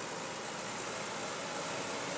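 A tractor's engine running steadily as it tows a beach-cleaning machine through sargassum on the sand, blended with the even rush of surf.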